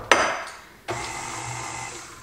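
A sharp knock that rings off over most of a second, then a stand mixer's motor switches on about a second in and runs with a steady whir as it mixes flour into cake batter.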